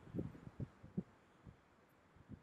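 Northern elephant seal bull giving its clap-threat call: a short run of low, throbbing pulses, with a last one about a second and a half in.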